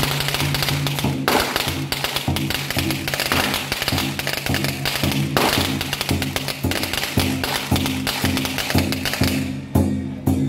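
Temple-troupe percussion music, a large barrel drum beating with other percussion, under a dense, continuous crackling that stops shortly before the end.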